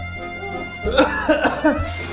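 A woman coughing, a run of about four short coughs about a second in, over background music with a steady bass line.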